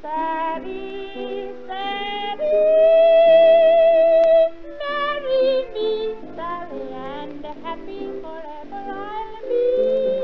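Music from a 1933 live recording: a woman singing a high melody with vibrato over instrumental accompaniment. The loudest part is one long held note near the middle.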